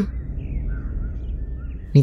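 Outdoor ambience: a low steady rumble with a few faint bird chirps in the middle of the gap.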